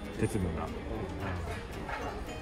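Indistinct talking voices, with no clear non-speech sound.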